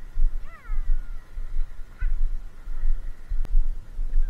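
Wind buffeting the microphone in gusts. Over it, a bird's cry rises and falls about half a second in, a short higher call comes near two seconds, and there is one brief click shortly before the end.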